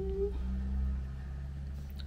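Steady low hum of room tone, with a single held hummed note from a woman's voice that stops just after the start.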